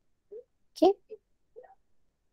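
A few short murmured voice sounds with no clear words, the loudest about a second in.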